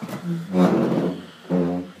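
A man's voice making low, drawn-out hesitation sounds at a steady pitch, held twice, with a louder, rougher stretch between them.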